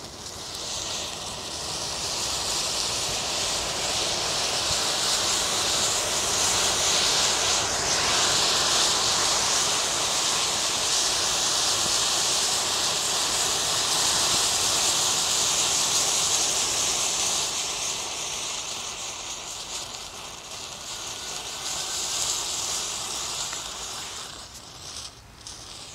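Massed safety match heads flaring and burning in a chain, a loud steady hiss that swells in over the first second, eases off about two-thirds of the way through and rises again briefly before dropping near the end.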